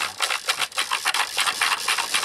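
Rapid clicking of an iHome iH6 clock radio's tuning control being turned, over hiss of FM static as the radio steps down the band between stations.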